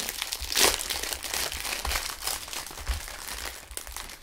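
Clear cellophane wrapper crinkling and crackling as it is peeled off a cardboard cake box, one louder crackle about half a second in.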